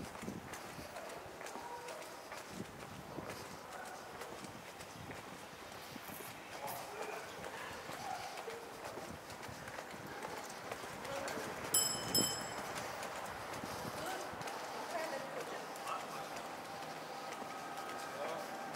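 Footsteps on stone paving at a steady walking pace, with faint voices in the background. About twelve seconds in, a brief high ringing clink is the loudest sound.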